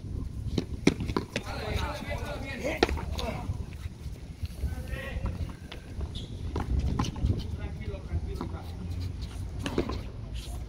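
Frontón hand-pelota rally: several sharp smacks at irregular intervals as the ball is struck with bare hands and hits the concrete wall, with voices calling out on the court.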